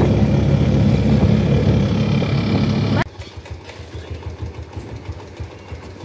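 Motorcycle rickshaw's small engine running loudly under a passenger in the rear seat, with road noise. It cuts off suddenly about halfway, leaving a quieter, low, uneven engine idle.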